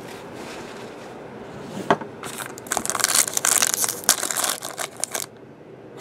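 Foil trading-card pack torn open and crinkled by hand: one click about two seconds in, then about three seconds of dense crinkling and tearing that stops shortly before the end.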